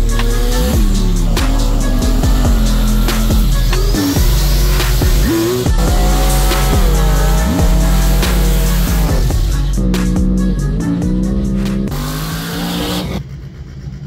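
Car engines revving and tyres squealing through drag-strip burnouts, mixed with loud electronic music with a heavy steady bass. Both drop away about a second before the end.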